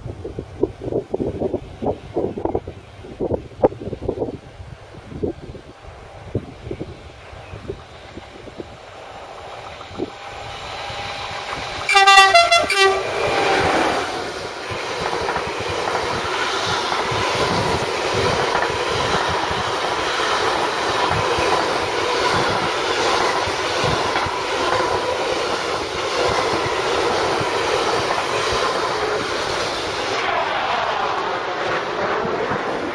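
Freight train of container flat wagons approaching and running past close by. The train's horn sounds briefly about twelve seconds in, the loudest moment. After that the wagons' wheels rumble and clatter steadily over the track. In the first seconds, wind gusts buffet the microphone.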